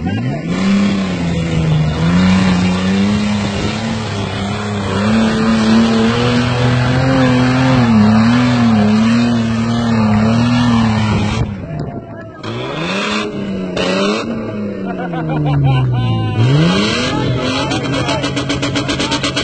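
Off-road SUV engine revving hard on a steep dirt hill climb. It jumps up at once and is held at high revs for about ten seconds, its pitch wavering. Then it drops, rises and falls again, and revs up sharply once more near the end.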